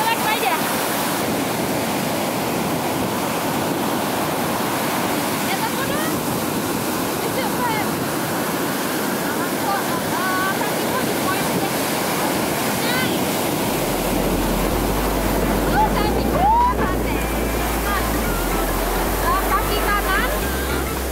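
Ocean surf breaking steadily on a sandy beach, a continuous wash of waves. Low wind rumble on the microphone joins about two-thirds of the way through.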